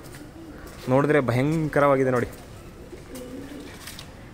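A man's voice sounds twice in quick succession with a wavering pitch. Near the end a pigeon coos more faintly.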